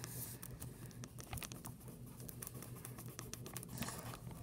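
Soft scattered scratches and small taps of drawing on paper and handling sheets of paper on a table, over a faint steady low hum.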